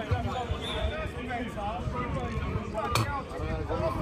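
Players' voices calling across a five-a-side football pitch, with one sharp thud of the ball being kicked about three seconds in.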